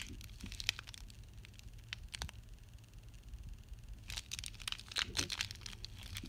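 Plastic shrink wrap on a bar of soap crinkling and crackling as it is handled, in scattered short clusters that come thickest about four to five seconds in.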